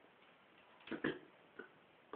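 A pause with a quiet room and a few faint short clicks: two close together about a second in, then a softer one shortly after.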